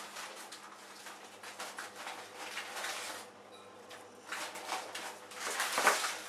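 A cat chewing and licking soft melon chunks from a saucer: irregular wet smacking and crunching, with a louder smack just before the end.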